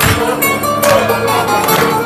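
Live Greek band music: bouzouki, violin and guitar playing with a strong beat that strikes about once every second.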